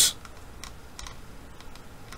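Several faint, short clicks from a computer keyboard, spread over two seconds as the document is paged through.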